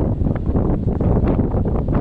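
Wind buffeting the microphone: a loud, gusty low rumble with no steady tone.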